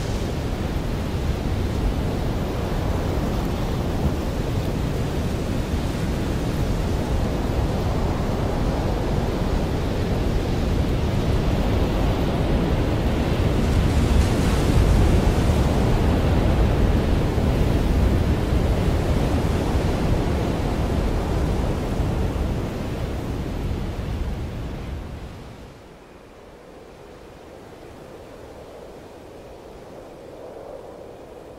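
Steady noise of strong wind and rough sea, growing louder around the middle and dropping suddenly to a much quieter hiss about five seconds before the end.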